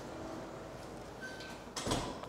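Steady low room noise picked up by a clip-on microphone on a quilted jacket, with light handling and clothing rustle, and a brief louder noise near the end.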